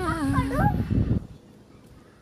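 A drawn-out, wavering vocal note that dips and falls in pitch, then stops about a second in, leaving only faint background.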